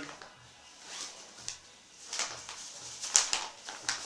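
Padded fabric of a paintball body-protector pad rustling as it is handled and turned over: a series of short rustles, the loudest about three seconds in.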